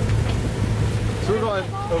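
Sailing catamaran's inboard engine running with a steady low drone as the boat motors into the harbour, with wind and water noise over it. A voice starts talking near the end.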